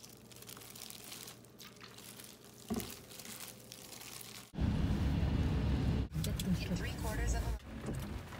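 Hands in plastic gloves tossing glass noodles and vegetables (japchae) in a stainless steel bowl, the gloves and noodles crinkling and rustling. A little over halfway through this stops abruptly and a much louder low rumble takes over.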